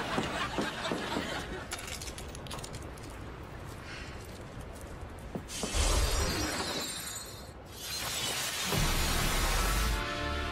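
TV magic-spell sound effect: a glassy, crackling shatter for the first five seconds, then two loud rushing bursts with a deep boom, one about six seconds in that cuts off suddenly and one starting near nine seconds, with music underneath.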